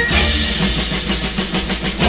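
Orchestral film-soundtrack march: a short rhythmic passage of quick, even percussive strokes over low bass notes.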